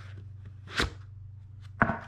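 Cardboard packaging being handled: a short scrape about a second in as a paper sleeve comes off a flashlight box, then a sharper tap near the end as it is put down on the table. A steady low hum runs underneath.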